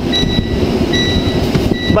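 Low rumble and clatter inside a semi-truck cab, with the engine running, and a high electronic beep repeating about every second.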